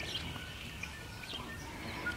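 Low background noise with a few faint, short bird chirps.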